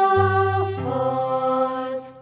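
Song with piano accompaniment, sung on one long held note over a sustained chord, with a low bass note coming in just after the start.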